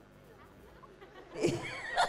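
A man's short, loud vocal cry, bursting out suddenly about a second and a half in after a quiet stretch.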